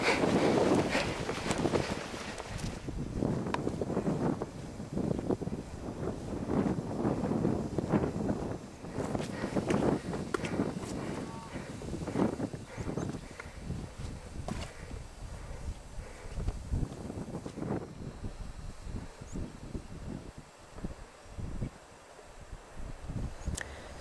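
Wind on a handheld camera's microphone, with irregular footsteps, rustling and knocks from walking through long grass and climbing over a stile at a stone wall. It grows quieter for a few seconds near the end.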